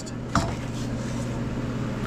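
A single short metallic clink with a brief ring about a third of a second in, as a turbocharger is set down on a steel-cluttered workbench, over a steady low shop hum.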